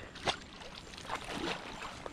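Hooked bullseye snakehead thrashing at the water's surface: irregular splashing, with one sharper splash near the start.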